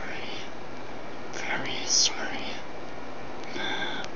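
A man whispering, his words indistinct, over a steady background hiss; a sharp hissed sound about two seconds in is the loudest moment.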